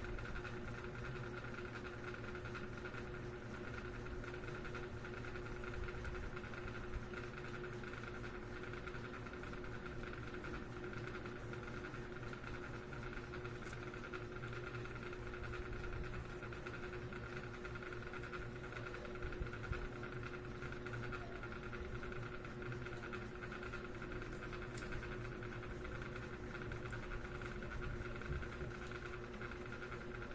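Steady background hum holding two faint steady tones, with a few light clicks of a laptop touchpad and keys, about a third, half and two thirds of the way in.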